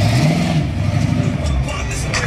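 Oldsmobile Cutlass convertible's engine revving as the car pulls away, its pitch rising briefly early on and then settling into a low rumble.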